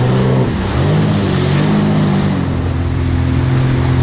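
Jet ski engine running at speed with the rush of spray and wind. The engine's pitch dips briefly about half a second in, then holds steady.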